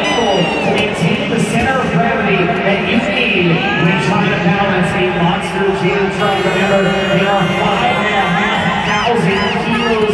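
A large stadium crowd chattering, shouting and cheering, with high-pitched children's shouts rising and falling through it.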